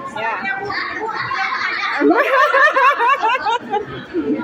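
A group of women laughing and talking over one another, with the laughter loudest in the second half.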